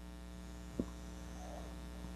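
Steady electrical mains hum, with one short tap of a marker against a whiteboard a little under a second in.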